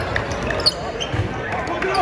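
Basketball being dribbled on a hardwood gym floor, a few low bounces, over the steady chatter of spectators' voices in a large gym.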